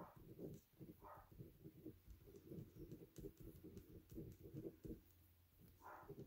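Faint scratching of a ballpoint pen writing on a small slip of paper, in quick short strokes.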